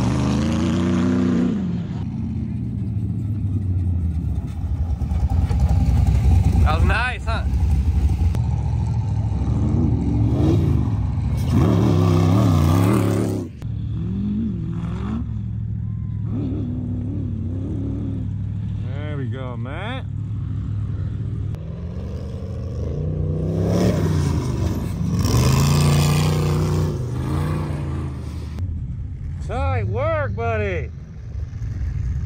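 Off-road vehicle engines running throughout, with repeated revs whose pitch rises and falls several times.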